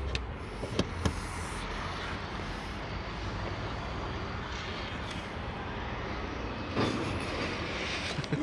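Steady outdoor background noise with a low rumble, like vehicles running in the distance, with a few light clicks in the first second.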